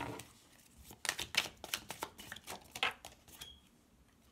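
A deck of tarot cards being shuffled by hand: a quick run of soft card slaps and flicks that starts about a second in and stops shortly before the end.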